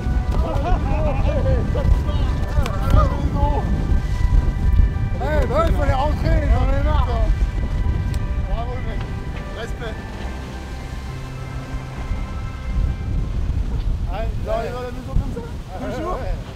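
Wind buffeting the microphone on an open sailboat deck, with short excited shouts and cheers from the crew over steady held tones of background music.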